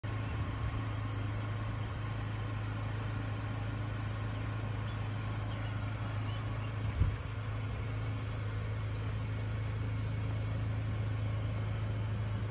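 2024 GMC Canyon AT4's 2.7-litre turbocharged four-cylinder idling with a steady low hum. A single thump about seven seconds in.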